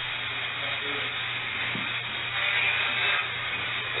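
Steady hiss and a low hum from an investigation audio recording played back, with faint, indistinct voices in the background.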